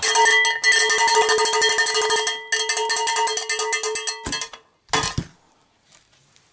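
Cowbell struck rapidly and repeatedly, its metallic ring sustained under the quick strikes for about four seconds, then breaking off; a brief burst of sound follows about a second later.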